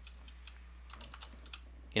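Computer keyboard keys tapped a few at a time: faint, scattered light clicks as text is edited.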